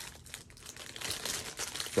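Crinkling and rustling of packaging as hands rummage inside a cardboard box, a rapid run of small crackles that gets busier in the second half.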